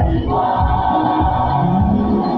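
Several voices singing a gospel worship song together over a steady low beat, about two beats a second.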